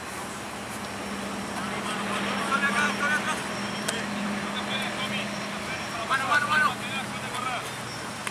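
Rugby players shouting calls to one another during a passing drill, loudest in two bursts about two and a half and six seconds in, over a steady low engine hum.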